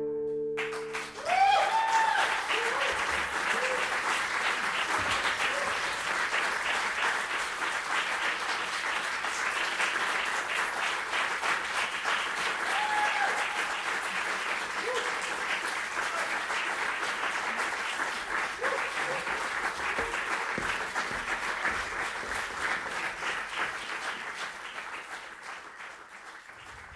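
The last chord of a cello and piano dies away in the first second, then a concert audience applauds steadily, the clapping thinning and fading near the end.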